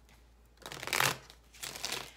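Tarot cards being shuffled by hand: two short bursts of papery card rustle, about half a second in and again near the end.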